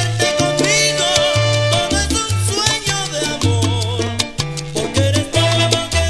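Salsa band recording playing, with a bass line and percussion hits.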